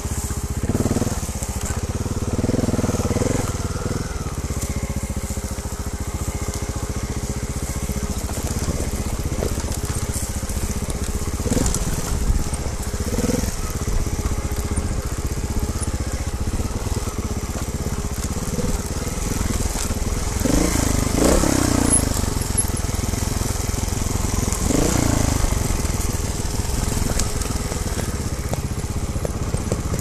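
Trials motorcycle engine running at low revs on a steep descent, with several brief rises in revs, and the tyres crunching over dry leaves and twigs.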